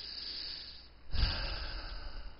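A man breathing close to a headset microphone: a soft breath through the first second, then a louder breath about a second in with a low rumble of air hitting the mic.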